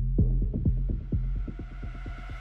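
Electronic dance music in a DJ mix at a build-up: a drum roll that speeds up over steady low bass, with a rising noise sweep building behind it.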